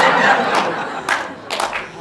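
Live audience laughing and cheering, loudest at the start and dying down within about a second and a half, with a few scattered sharp claps.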